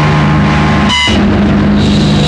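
Noise rock recording: loud, dense distorted tones held steady over drums, with a brief break about a second in.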